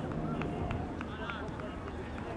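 Distant shouts and calls of soccer players across an open pitch, short and scattered, with a few sharp ticks among them over a low outdoor rumble.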